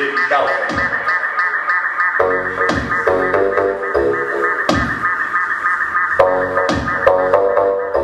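Live electronic music: a fast, repeating synthesizer pattern runs throughout, with deep notes that slide downward in pitch every second or two.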